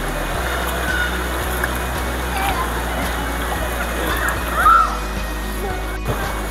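Background music over the steady rush of shallow river water running over rocks, with a few faint voices.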